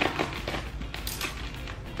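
A plastic mailer package being handled and opened: a few short crinkles and taps, over soft background music.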